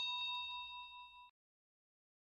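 Chime sound effect: a single bell-like ding that rings with a clear tone and fades, cutting off sharply about a second in.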